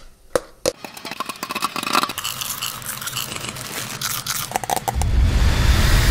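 Popcorn kernels popping: a dense run of sharp pops and crackles, joined about five seconds in by a deep rumbling whoosh.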